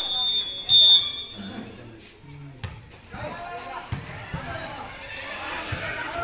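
A referee's whistle blown once, a steady shrill blast lasting about a second and a half, loudest near a second in. Then a few sharp thuds of a volleyball being hit, among the voices of players and onlookers.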